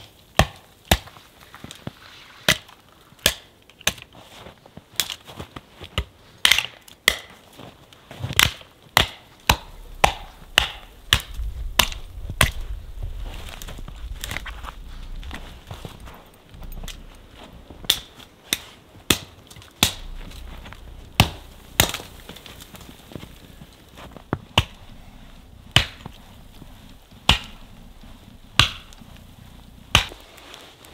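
Hatchet chopping into a small dead spruce trunk: a series of sharp strikes about once a second with short pauses between runs.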